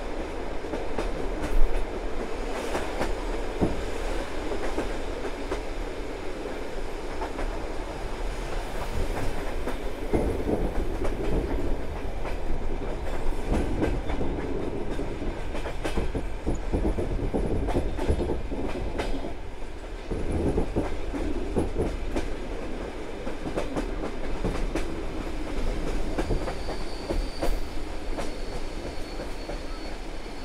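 Passenger train carriage rolling over the track, with a steady rumble and irregular clicking of the wheels over rail joints and switches. A faint, thin high squeal comes in near the end.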